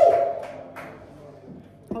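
A man's drawn-out call, rising then held, dies away into the low murmur of a bar room, with one sharp tap just under a second in. A man starts speaking right at the end.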